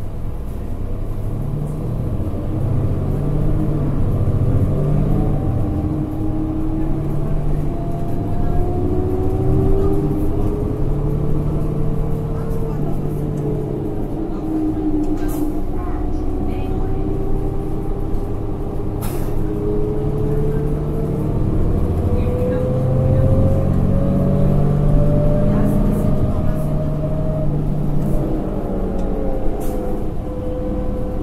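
Interior of a New Flyer D40LF diesel city bus under way: the Cummins ISL9 engine and driveline run with a low rumble, and a whine rises in pitch twice as the bus gathers speed, then falls away as it slows. A few short rattles or clicks come through in the middle.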